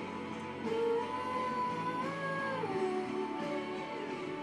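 Pop backing music with guitar, without singing, and a held melody line that steps up in pitch around the middle and then drops back.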